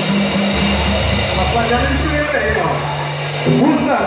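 Live samba group with acoustic guitars ending a song: the instruments hold a final chord that dies away, and a man's voice comes in on the microphone near the end.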